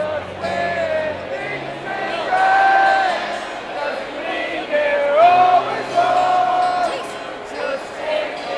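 Acoustic guitar played live over a venue PA, with long held wordless voice notes rising over it, some sliding up at the start, and crowd noise in the room.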